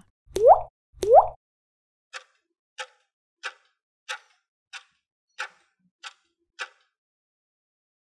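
Two quick rising 'bloop' pop sound effects, then a stopwatch ticking sound effect, eight ticks at about one and a half a second, counting down the time to answer a quiz question.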